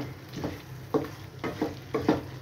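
Spatula stirring minced-meat keema with chopped green bell pepper in a hot pan. It scrapes and knocks against the pan about every half second, with the food frying in a steady sizzle between strokes.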